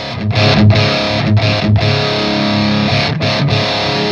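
Electric guitar played through a Mesa Boogie Dual Rectifier tube amp head's second channel in its Raw mode, the lower-gain setting of that channel, with a rough edge to it. It plays distorted chords in a rhythm riff, broken by several short stops.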